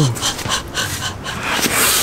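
Breathy, dog-like panting from a man imitating a dog.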